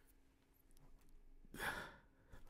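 Near silence, then about a second and a half in a man's short, breathy sigh.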